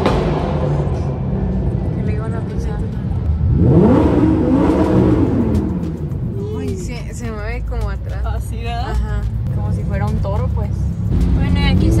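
Lamborghini engine revved while driving through a tunnel, heard from inside the cabin: about four seconds in the pitch climbs sharply, then falls away over the next second. A steady engine and road drone runs underneath.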